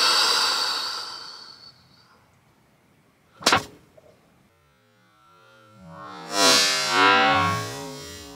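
Thin aluminium baking sheet rings after being struck against a head, the ring dying away over about two seconds. A single sharp knock comes about three and a half seconds in. Music comes in for the last two seconds or so.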